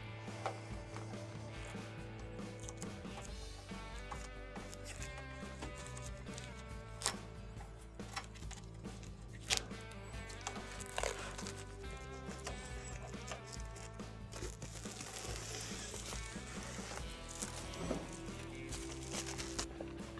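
Quiet background music with steady held notes. Over it come a few faint sharp clicks and a stretch of soft hissing rustle, as the thin protective plastic film is peeled off a stainless-steel range console cover.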